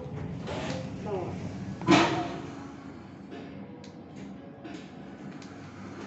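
People talking nearby, then one sharp, loud knock about two seconds in, followed by a few faint clicks over a low steady hum.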